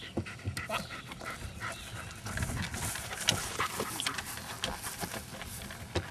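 German Shepherd panting, with irregular taps and knocks from its paws on the wooden dog-walk plank.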